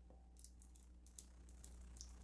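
Near silence: room tone with a low steady hum and a few faint small clicks, one a little louder just past a second in.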